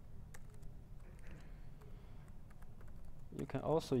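Laptop keyboard keys being typed: a few scattered, unevenly spaced clicks.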